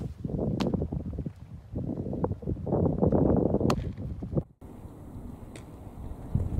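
Gusty wind buffeting the microphone, with a sharp pop about half a second in as the pitched baseball smacks into the catcher's mitt, and another sharp crack past the middle.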